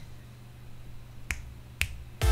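Two finger snaps, about half a second apart, each a single sharp crack.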